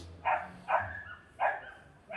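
A dog barking: three short barks spaced about half a second apart.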